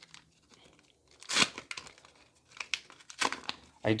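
The paper wrapper of a Pokémon trading card booster pack being torn open by hand: one sharp rip about a second and a half in, followed by lighter crinkling of the wrapper.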